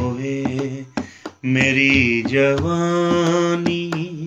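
A man singing a worship song in long, held melismatic notes, over regular drum strokes.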